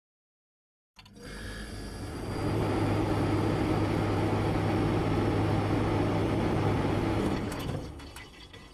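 Slowed-down logo sound effect: after a second of dead silence, a deep, noisy rumble with a low hum swells up, holds steady, and fades near the end.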